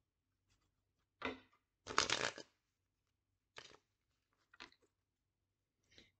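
A deck of tarot cards being shuffled by hand: a short burst of card noise about a second in, a louder one about two seconds in, then two faint clicks.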